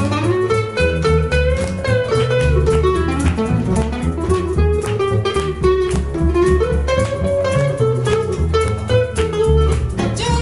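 Instrumental break in a jazz standard: a hollow-body archtop guitar plays a melodic line over a plucked double bass and cajón beats, with no vocals.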